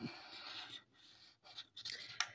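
Faint scraping of a small scratcher token rubbing the latex coating off a scratch-off lottery ticket: one stroke of just under a second, a pause, then a few short scrapes near the end.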